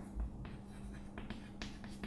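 Chalk writing on a chalkboard: a series of short scratching, tapping strokes as letters are written, over a steady low hum.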